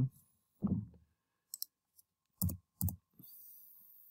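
A few separate computer keyboard keystrokes, with a louder pair about two and a half seconds in, followed by a faint hiss near the end.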